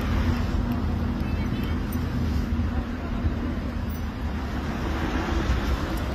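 Steady low rumble of road traffic, with no distinct passing vehicle or other event standing out.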